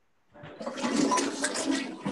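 A steady rushing, water-like noise that starts about half a second in, carried over an open call microphone.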